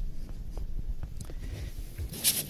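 A few faint, irregular footsteps on a stage floor over low room noise.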